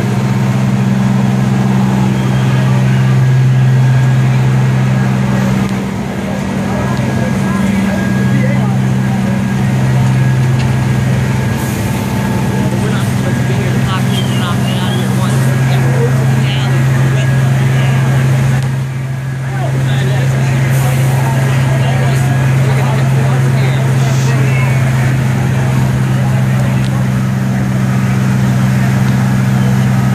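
Fire engines' diesel engines running steadily, a loud low drone, with people talking in the background.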